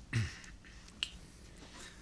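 Faint sounds of a man settling at a lectern microphone: a short breathy vocal sound at the start, then a single sharp click about a second in.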